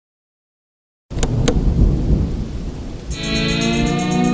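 Silence, then about a second in a sudden crack and low rolling rumble of thunder, used as a trailer sound effect. About three seconds in, music enters with a sustained chord over the fading rumble.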